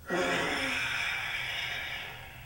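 A forceful, drawn-out hissing exhalation of Goju-ryu Sanchin kata breathing. It starts abruptly with a throaty edge and fades over about two seconds.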